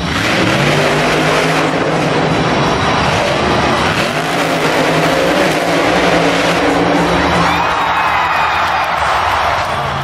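Monster truck engines running loud and revving inside a stadium arena, with a dense, continuous wash of engine and arena noise.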